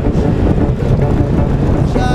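Motorcycle engine running at cruising speed with wind buffeting the microphone.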